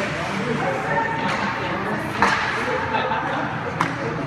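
Spectators talking over an ice hockey game, with two sharp cracks of stick and puck, one a little past halfway and one near the end.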